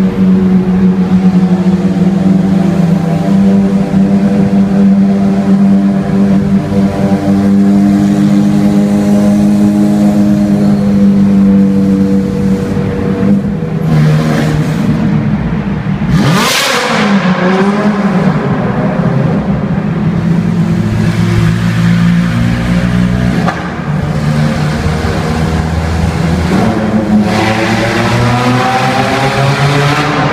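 Supercar engines running in a road tunnel, heard from inside a car alongside. There is a steady engine note for the first dozen seconds, then a sudden loud burst of revving about sixteen seconds in, and the revs climb again near the end.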